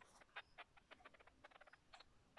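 Near silence, broken by faint, irregular short clicks and chirps.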